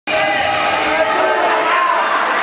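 Live basketball game in a large echoing hall: short squeaking tones from sneakers on the wooden court and one ball bounce about a second in, over voices from the crowd and players.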